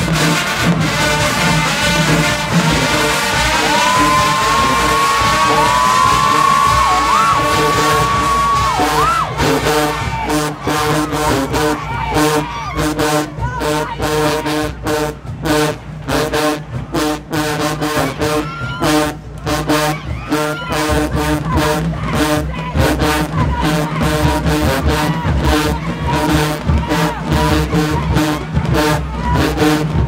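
HBCU marching band of brass, sousaphones and drums playing a loud dance tune from the stands. About four seconds in, a high note is held for several seconds, and from about ten seconds on the band plays short, clipped stabs with brief gaps between them.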